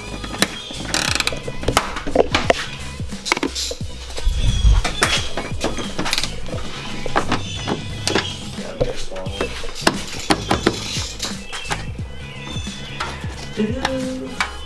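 Background music over the clicking of a hand ratchet loosening bumper fasteners, with irregular sharp clicks as plastic bumper push clips are pried out with a trim tool.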